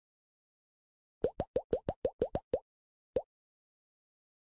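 Cartoon pop sound effects for an animated title card: a quick run of nine short pops, each rising slightly in pitch, then one more after a short pause.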